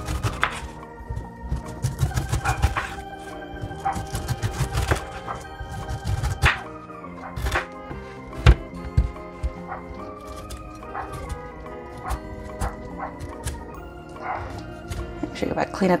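Chef's knife slicing the rind off a whole pineapple on a wooden cutting board: repeated crunching cuts and sharp thunks of the blade meeting the board, over background music.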